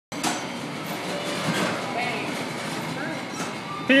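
Electric kiddie bumper cars running on a rink floor: a steady rolling and motor noise with a few light knocks, and faint voices behind it. A man's voice starts loudly right at the end.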